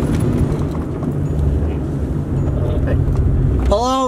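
Car engine and road noise heard from inside the cabin while driving, a steady low rumble. A man's voice calls out near the end.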